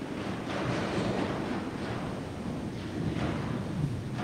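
Low, even rumble and rustle of a large church with a congregation shifting in place, with no distinct event.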